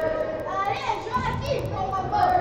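Young players shouting and calling out during an indoor five-a-side football game, a high shout about halfway through standing out over general court noise.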